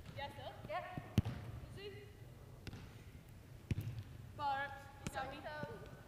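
Soccer ball being struck by players' feet on artificial turf: four short, sharp thuds about a second apart, the loudest a little over a second in. Faint players' calls are heard between the kicks.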